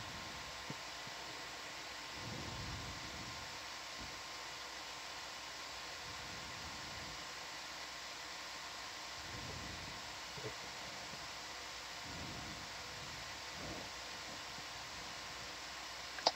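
Steady background hiss with faint steady hum tones and a few soft low thumps: the open audio feed of the ROV control room between remarks.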